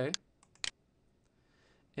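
Computer mouse button clicking twice, about half a second apart.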